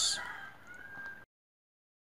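Fading tail of an editing transition sound effect, with a brief hiss and a faint steady high tone dying away, cut off to dead silence a little over a second in.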